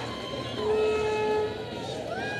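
A single steady horn-like tone, held for about a second, over crowd noise.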